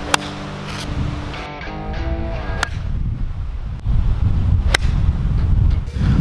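Guitar background music over wind rumble on the microphone, with a sharp crack just after the start: a golf club striking a ball off the tee. Two more sharp clicks follow, about halfway through and near the end.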